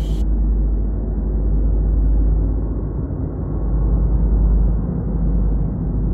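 A loud, muffled low rumbling noise that swells and fades without any clear pitch or knocks.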